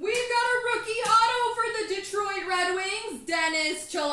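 A high voice singing out a few long held notes without words, loud, stepping down in pitch toward the end, as a cheer over a rookie autograph card pull.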